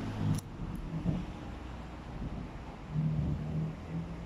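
Road traffic: a vehicle engine running as a low hum that swells about three seconds in. A short click comes about half a second in.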